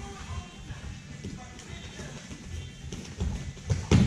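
Background music playing, with the dull thumps of bare feet and bodies shuffling on foam grappling mats, and one loud thud shortly before the end as a takedown attempt hits the mat.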